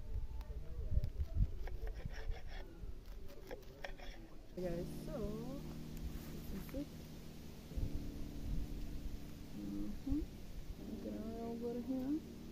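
Knife chopping callaloo on a cutting board, a quick run of taps, with wind rumbling on the microphone. About four and a half seconds in, this gives way to a steady low drone with gliding tones over it, which pauses briefly near the middle.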